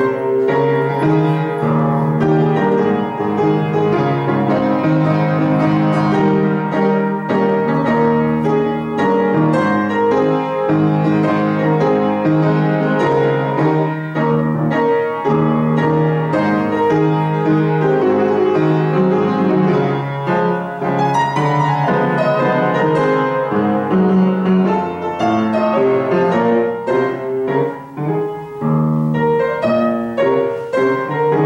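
Upright piano played solo: a gospel hymn in full, sustained chords over a moving bass line.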